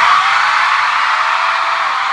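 A large crowd of fans screaming and cheering, loudest right at the start and then holding steady.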